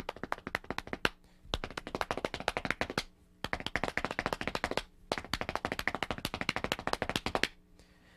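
Hands slapping the thighs and sneakers tapping a wooden floor in fast, even runs of strokes. This is a drum-practice combination of one hand stroke followed by two foot strokes, played without a kit. A short burst comes first, then three long runs separated by brief pauses.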